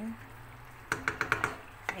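Wooden spatula knocking against the side of a stainless steel pot, a quick run of sharp clicks about a second in.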